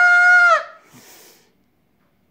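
A man's voice holding one high sung note, steady in pitch, ending about half a second in, followed by a faint breath and then silence.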